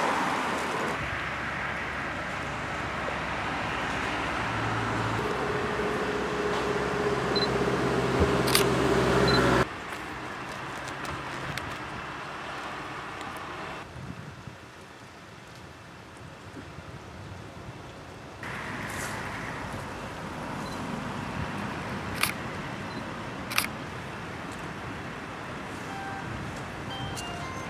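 Outdoor ambience broken by abrupt edits: a vehicle engine running steadily for a few seconds in the first half, with wind noise and a few sharp clicks later on.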